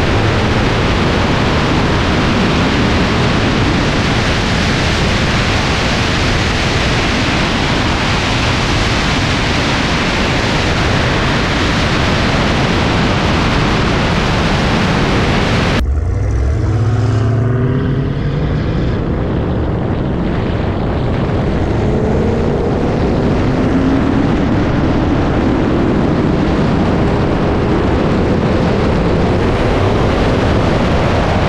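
Supercharged V8 engines of a Magnuson-supercharged Camaro SS and a Hellcat at wide-open throttle in a highway roll race, heard from a camera outside the car. For about the first half a loud, steady rush of wind and engine noise; then, after an abrupt cut, the engine note climbs steadily in pitch as the cars accelerate.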